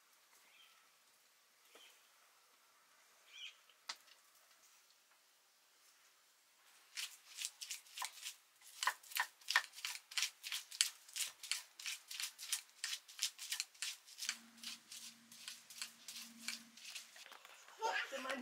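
Garlic cloves being crushed with a hand stone on a flat stone grinding slab: a fast, even run of sharp stone-on-stone knocks, about three or four a second, starting some seven seconds in. Before it there are only a few faint cutting clicks, and right at the end a goat begins to bleat.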